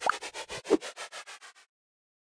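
End-screen sound effect: a rapid scratchy stutter of about ten pulses a second with two short rising chirps, the second the loudest, cutting off suddenly about one and a half seconds in.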